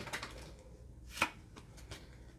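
Pokémon trading cards being handled and flipped through by hand, with one short sharp click a little over a second in.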